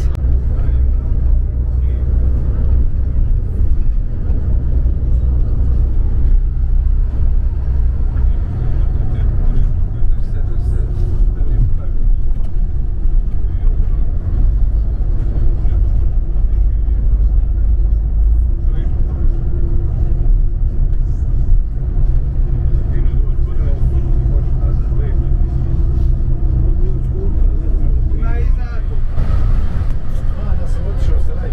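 Inside a moving coach: the engine and tyres give a steady, loud low rumble, with a humming drone through much of it.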